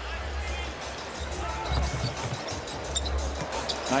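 Basketball arena sound during play: a steady crowd murmur with a basketball being dribbled on the hardwood court and arena music playing low underneath.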